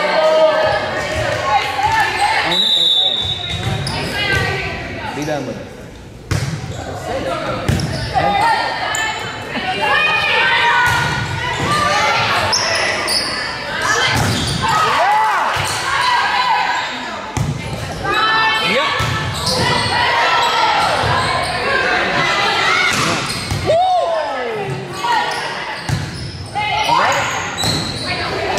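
Sounds of a volleyball rally in a gymnasium: repeated sharp smacks of the ball off hands, arms and the floor, mixed with constant indistinct voices of players and spectators calling out, in a large hall.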